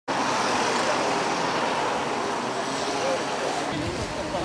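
Road traffic noise: a steady rush of passing cars on the road beside the pavement, with faint voices in the background.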